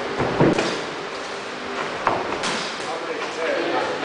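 Boxing gloves thudding as punches land in sparring: a few sharp hits, the loudest about half a second in and two more around two seconds in, over background voices in a gym hall.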